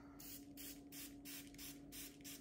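Trigger spray bottle squirted repeatedly onto a grooming mitt: a quick run of short sprays, about four a second.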